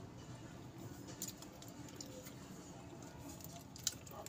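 Faint chewing and small wet mouth clicks from people eating soft steamed sweet potato, with a sharper click near the end.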